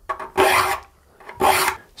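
Saw file pushed across the teeth of a crosscut hand saw in two short rasping strokes about a second apart. The file is sharpening the teeth, taking each tooth down until the shiny flat spot on its tip is gone.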